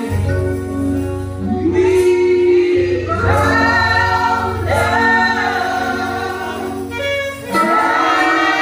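Gospel choir singing with instrumental backing: held sung notes over a steady bass, with a brief drop in the music about seven and a half seconds in.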